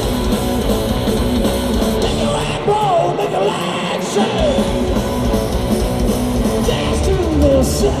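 A live heavy rock song played loud: distorted electric guitars over bass and drums, with sliding pitches. The bottom end thins out briefly and comes back in full about four seconds in.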